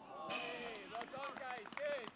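Several voices shouting and calling out over one another, starting about a quarter of a second in.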